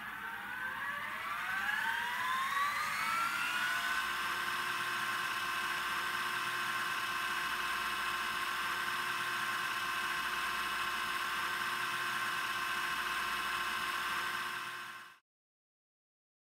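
A drone of several steady tones that glides upward in pitch over the first few seconds, then holds as a sustained chord and cuts off abruptly near the end.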